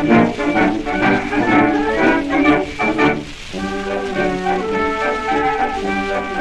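German military brass band playing a march, heard from an acoustic shellac 78 rpm record of about 1910. Short, accented chords come first, then a brief dip a little past the middle, then held brass chords.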